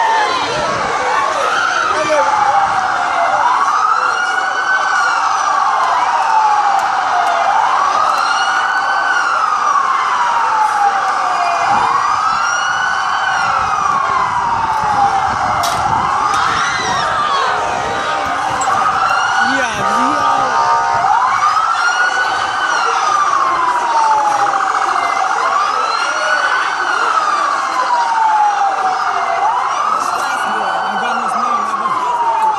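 Police car siren wailing: each cycle rises quickly and falls slowly, repeating about every four seconds throughout, with a brief different horn-like tone about two-thirds of the way in.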